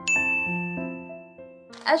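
A bright chime ding that strikes just after the start and rings out, fading over about a second and a half, over soft sustained notes of an intro jingle. A woman starts speaking near the end.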